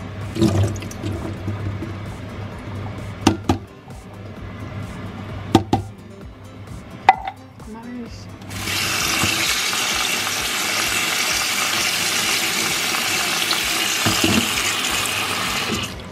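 A few sharp clicks and knocks as chickpeas are tipped into a plastic colander in a stainless-steel sink. About halfway through, a kitchen tap starts running steadily onto the chickpeas in the colander, rinsing them.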